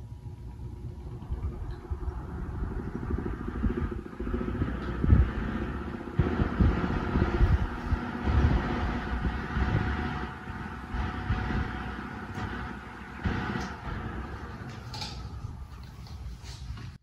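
Electric desk fan running, its blade whir building as it picks up speed over the first few seconds and easing off as it slows near the end. The fan's airflow buffets the microphone throughout with a gusty low rumble.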